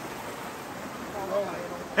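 Steady rushing of flowing river water, with a faint voice briefly heard about a second in.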